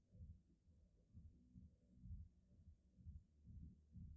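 Near silence: quiet room tone with faint, irregular low thuds about twice a second.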